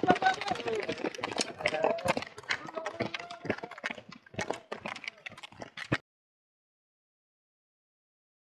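Several roller skiers' pole tips clicking on asphalt in a quick, uneven patter, with voices in the first couple of seconds. It cuts off suddenly about six seconds in, leaving silence.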